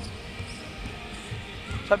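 Basketball dribbled on a hardwood gym floor: a few dull, irregular bounces.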